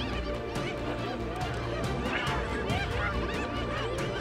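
Spotted hyena giving short, high-pitched rising-and-falling calls in distress after a lion attack, in a few brief clusters near the start and again around the middle.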